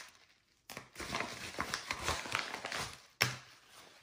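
Crinkling and rustling of a yellow padded mailer being handled, with a sharper knock about three seconds in.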